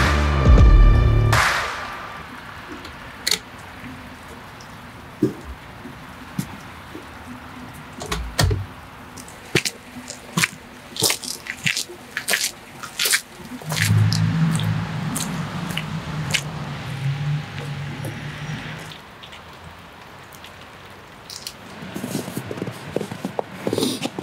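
Music that cuts off about a second and a half in, followed by a quiet stretch of scattered, irregular sharp drips of water. A low steady hum rises for several seconds past the middle and fades again.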